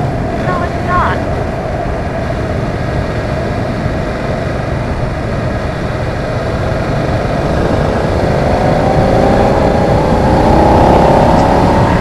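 Wind rushing over the microphone with a BMW F900R's parallel-twin engine running under it. About eight seconds in the engine note rises steadily and grows louder as the bike accelerates.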